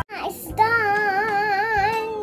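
A young girl singing one long held note with a wavering, vibrato-like pitch, starting about half a second in after a short rising slide.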